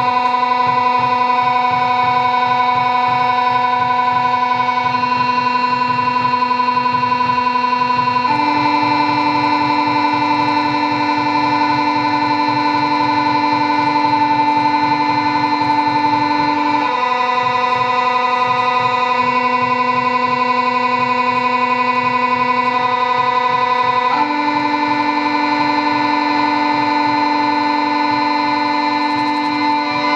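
Live electronic music: sustained synthesizer drone chords held for several seconds each and shifting to new chords a few times, over a low, rapidly pulsing layer.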